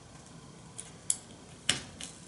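A few light, sharp clicks from fingers handling a stick pin against paper on cardboard next to a small mirror. The clicks come about a second in and again near the end.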